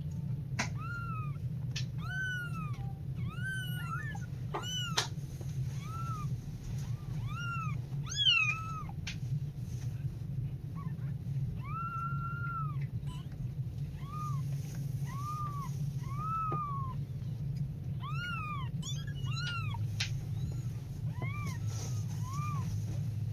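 Very young kittens mewing: a string of short, high mews that rise and fall, coming in runs of several about a second apart, with one longer, drawn-out mew about halfway through.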